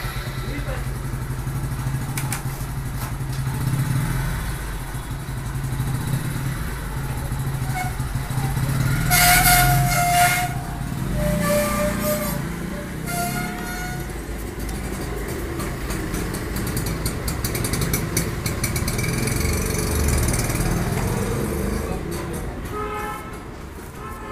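Street traffic: an engine running steadily, with short horn blasts about nine to thirteen seconds in, the loudest near ten seconds, and another brief one near the end.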